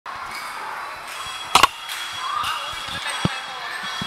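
Two sharp knocks in quick succession about one and a half seconds in, the loudest sound, then a single thud near the end, over a hubbub of voices echoing in a large hall.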